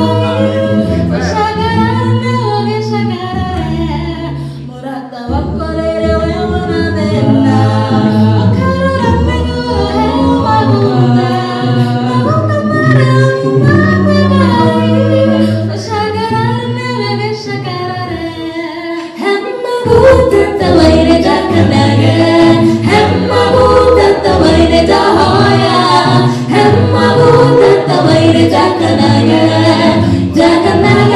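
A cappella gospel vocal group singing in harmony through microphones, with no instruments. About twenty seconds in the singing grows louder and fuller.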